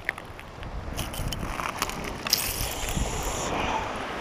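Wind buffeting the microphone, with scattered clicks and crunching of loose seashells from about a second in, loudest near the middle.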